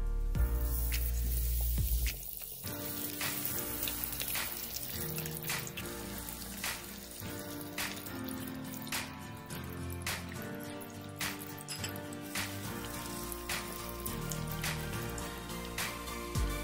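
Background music throughout. From about two seconds in, hot oil sizzles and crackles with frequent pops around breaded cheese balls deep-frying in a pan.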